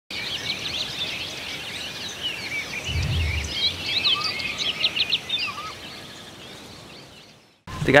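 A dense chorus of many birds chirping and whistling, which fades away near the end. A short low rumble comes about three seconds in.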